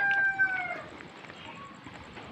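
A rooster crowing: the last part of a long held call, which drops in pitch and fades out under a second in.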